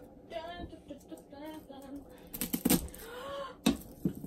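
Sharp knocks and clatter of kitchenware, loudest a little past halfway through and again near the end, with short cat meows in between.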